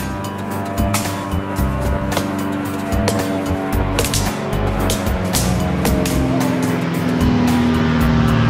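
Upbeat funk background music with a steady drumbeat. An engine-like hum rises in pitch and grows louder over the music in the last couple of seconds.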